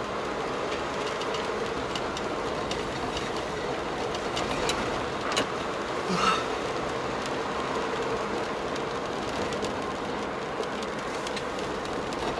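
Car driving along a road, heard from inside the cabin: steady road and tyre noise with engine hum, and scattered light clicks and knocks. A brief louder sound comes just after six seconds.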